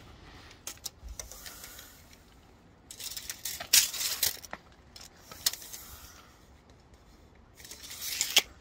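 Steel tape measure being drawn out and handled against timber spars: scattered clicks and rattles of the metal blade and case, busiest from about three to four and a half seconds in.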